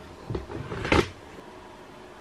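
A short run of irregular knocks and clatter, the last and loudest about a second in, like something being handled or set down.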